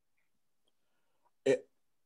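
Near silence, then one short spoken syllable about one and a half seconds in.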